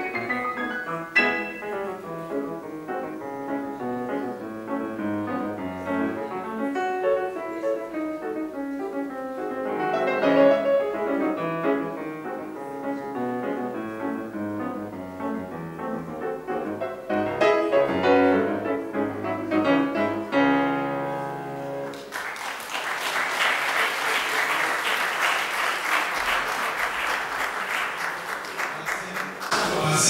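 Solo piece on a Giannini grand piano, ending about two-thirds of the way through. Audience applause follows and lasts to the end.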